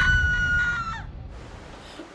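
A rooster crowing: a long held high note that drops away about a second in.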